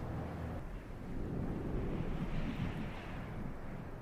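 A steady rushing, wind-like noise over a low rumble, swelling a little past the middle.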